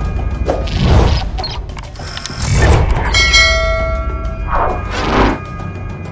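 Sound effects for an animated logo intro: a series of swelling whooshes about a second or two apart, with a bright ringing chime in the middle.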